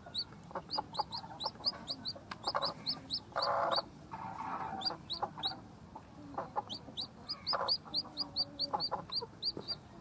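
Newly hatched chicks peeping: short, high cheeps that slide upward, in quick runs of several a second with short pauses. Lower, rougher bursts come in between, loudest just past the middle.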